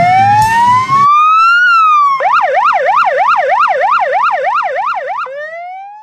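Electronic emergency-vehicle siren: a slow wail rising and then falling, switching to a fast warble of about three to four cycles a second, then back to a rising wail near the end. Acoustic guitar music fades out about a second in.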